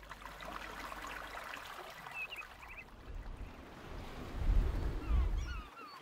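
Seaside ambience: a steady hiss of surf with birds calling in short, falling notes. A deep rumble swells from about four seconds in and cuts off shortly before the end.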